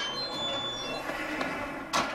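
Film soundtrack: a dense bed of held tones over a low rumble, ending in a sharp, loud hit.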